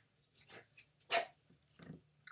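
A dog barking: three short barks about half a second apart, the loudest about a second in.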